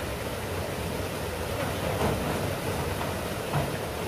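Small waterfall rushing steadily into a river pool, with a short knock near the end.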